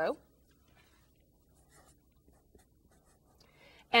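Faint strokes of a felt-tip marker writing on paper, a few short strokes in the middle.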